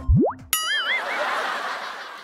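Cartoon comedy sound effects: a quick rising whistle sweep, then a wobbling boing over a noisy wash that fades away over about a second and a half.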